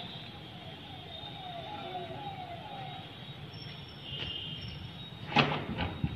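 Steady outdoor background noise with a few faint, repeated falling tones in the first half, then a person's short loud shout near the end.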